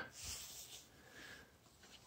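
Near silence: room tone, with one faint short hiss in the first second.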